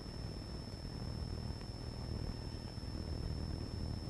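Quiet room tone of a lecture hall: a low steady hum with a faint steady high-pitched whine above it.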